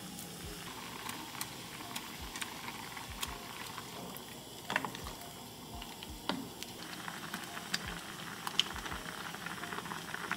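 Soup bubbling in a small saucepan on a gas stove, with a few sharp clicks and knocks as ingredients go in and a wooden spoon stirs. The bubbling grows busier about seven seconds in.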